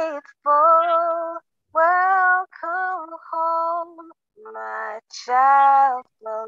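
A young woman singing a hymn solo and unaccompanied, heard through a video call's audio: held, sliding notes in short phrases with brief breaths between them.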